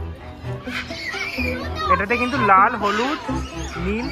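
Music with a voice over it, held notes and steady bass underneath, mixed with the voices of people.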